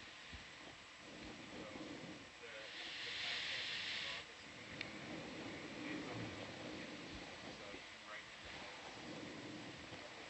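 Quiet room noise with faint, distant voices; a burst of hiss starts about two and a half seconds in and cuts off sharply about a second and a half later.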